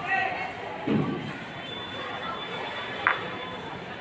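A dull thud about a second in, then one sharp click about three seconds in: a chess piece set down on the board and the button of a digital chess clock pressed, over faint background voices.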